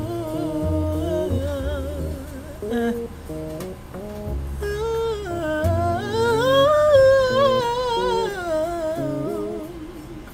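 A man humming a wordless melody that glides up and down, with low bass notes from music underneath. The humming climbs to its highest and loudest point about seven seconds in, then falls and fades near the end.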